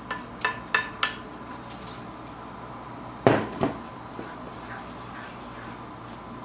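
Light clinks of a glass bowl and utensil against a nonstick frying pan, four quick taps in the first second as gram flour is tipped in, then a loud clatter of the spatula on the pan a little past three seconds, followed by a smaller knock.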